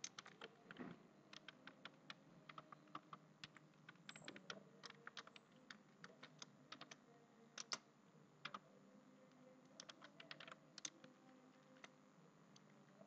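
Faint typing on a computer keyboard: quick bursts of keystrokes with short pauses between them.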